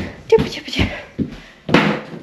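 A few short knocks and thumps from moving about and handling things, about four in two seconds, the loudest near the end.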